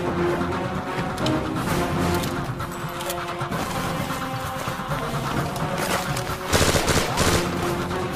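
Film soundtrack of an action scene: background music under scattered gunshots and impacts, with a louder burst of noise about six and a half seconds in.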